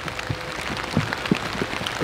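Outdoor background with scattered, irregular light ticks and a faint steady hum.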